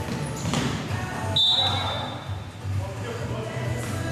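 Indoor basketball game sounds under background music: a ball bouncing on the court floor and players moving, with a short high-pitched tone about a second and a half in that fades quickly.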